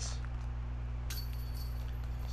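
Light metallic clinking of a disc golf basket's chains and tray about a second in, as a disc is taken out after a made putt, over a steady low hum.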